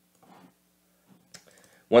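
A few faint computer keyboard taps and clicks, one sharper click about a second and a half in, over a faint steady low hum. A man's voice starts right at the end.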